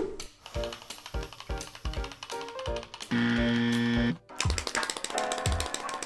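Background music with a beat, over a clicking rattle from the battery-free luggage scale being shaken to charge it. The clicks become rapid and dense over the last couple of seconds.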